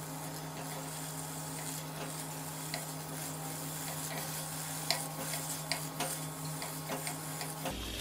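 Chinese sausages sizzling faintly in a small nonstick pan now that the boiling water has cooked off, with a few light clicks of wooden chopsticks turning them. A steady low hum runs underneath.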